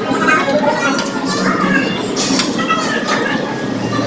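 Indistinct chatter of several voices in a busy restaurant dining area, steady throughout with no clear words.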